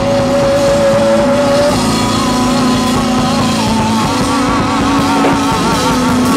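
Live rock band playing loudly with electric guitar and drums, a lead line holding one long note for about a second and a half, then long notes with a wide, wavering vibrato.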